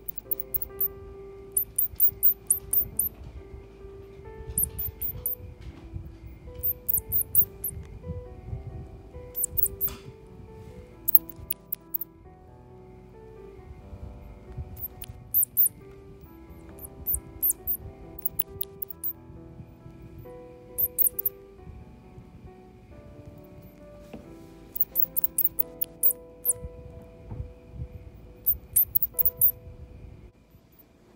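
Baby wild mice squeaking in quick clusters of three to six very high-pitched, short falling chirps, a burst every second or two, while being hand-fed milk. Background music with held notes plays underneath.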